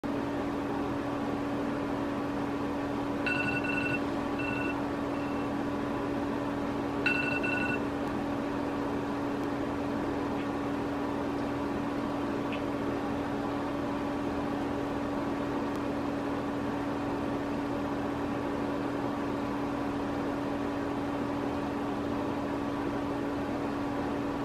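Smartphone alarm tone sounding in two short bursts of high electronic beeps a few seconds apart, over a steady low hum in the room.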